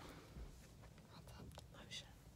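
Near silence with faint whispering.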